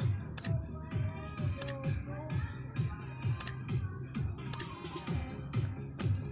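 Music from a mini sound system's speakers heard from far off, mostly a steady bass beat with fainter higher parts above it. A few sharp clicks sound close to the microphone.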